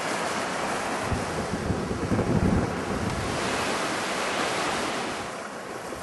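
Ocean surf washing against the shore in a steady rush, with wind buffeting the microphone and a louder low surge about two seconds in.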